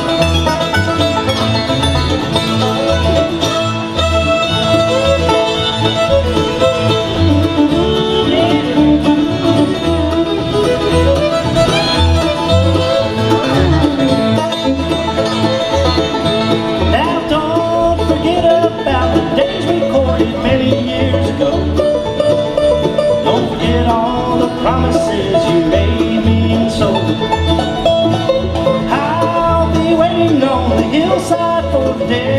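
Bluegrass band playing an instrumental break between sung verses: fiddle and banjo to the fore over guitar, mandolin and an upright bass pulsing on a steady beat.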